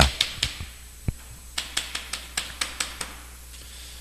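Chalk tapping and scraping on a chalkboard as a short word is written: a run of quick, sharp clicks, densest in the second half, with one dull thump about a second in.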